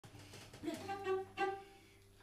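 Cello being bowed: a few short notes over a low sustained tone.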